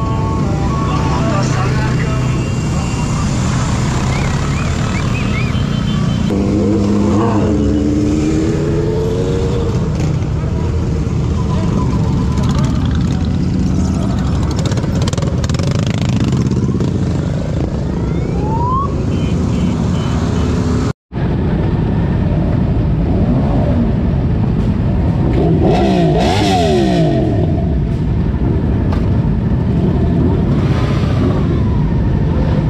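Several motorcycle engines running and revving as bikes pass, with people's voices around them. The sound cuts out for an instant about two-thirds of the way through, and more engine revving follows.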